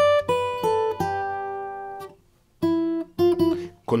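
Fingerpicked steel-string acoustic guitar with a capo: several plucked notes from an E major chord shape ring on and fade over about two seconds. After a short pause, three more notes are plucked as the left hand moves to the next position.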